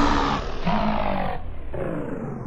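End of a slowed-down, screwed-and-chopped hip-hop track fading out: a dense, low, rough sound, broken by short gaps, grows duller and quieter as its treble rolls away.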